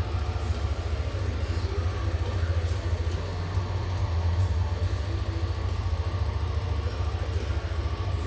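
A steady low rumble, even in level throughout.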